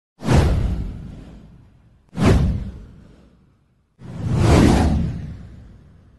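Three whoosh sound effects of an animated title intro, about two seconds apart. The first two hit suddenly and fade out over a second or so; the third swells in more slowly before fading.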